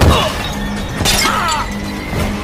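Background music with added fight sound effects: a sudden hit right at the start and a second, noisier hit about a second in.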